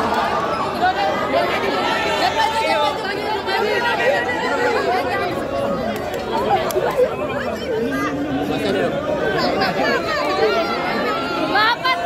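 A crowd of reporters all talking at once, with many voices overlapping in a continuous chatter.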